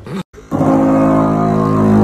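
Percussive massage gun pressed against a hollow stainless-steel box, its rapid strikes making the metal panel give a loud, steady droning buzz that starts about half a second in.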